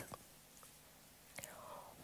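Near silence in a pause between spoken sentences, with a faint mouth click at the start and a faint intake of breath near the end, close to a headset microphone.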